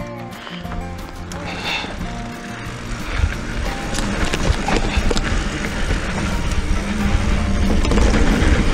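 Background music with a steady beat over a mountain bike rolling down a dirt trail. The rumble of the tyres on the dirt builds from about three seconds in as the bike picks up speed, with scattered clicks and rattles from the bike.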